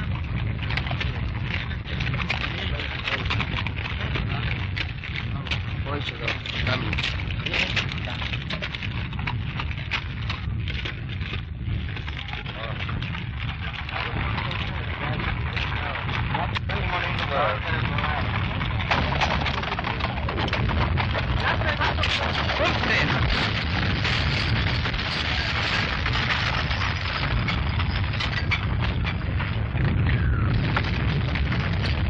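Battle noise on an old film soundtrack: a continuous low rumble of distant artillery fire under dense crackling and clattering. It gets somewhat louder after about 18 seconds.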